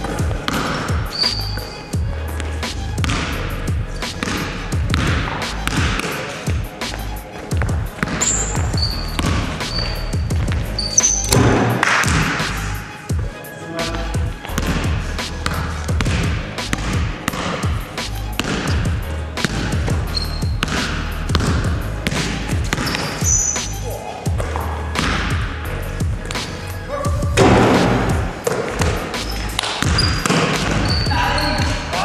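A basketball being dribbled and bouncing on a sports-hall floor during a 3-on-3 game, with many sharp thuds echoing in the large hall and short high squeaks from sneakers.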